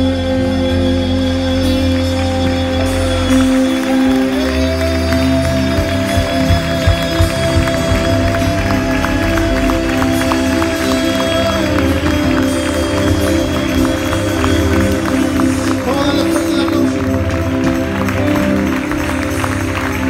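Live church band playing on without singing: long held notes over bass guitar and drums.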